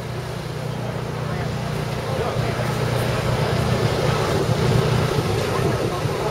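A vehicle engine running with a steady low rumble that slowly grows louder, with faint voices in the background.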